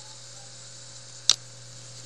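A single sharp click of a computer mouse button a little over a second in, over a steady low electrical hum and hiss.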